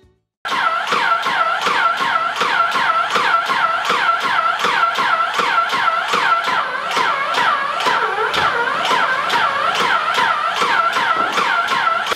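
Titan 440 Impact airless paint sprayer pumping primer. Its motor whine dips in pitch with each piston stroke, about four strokes a second, with a click at every stroke.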